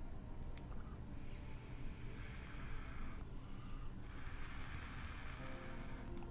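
Draws on an electronic cigarette, a soft hiss of air pulled through the mouthpiece, twice, each lasting about two seconds.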